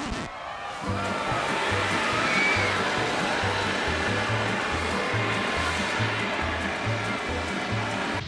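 The Dragon Bridge's dragon-head sculpture spraying a jet of water: a steady rushing hiss that starts about a second in. Music with a regular bass beat plays underneath.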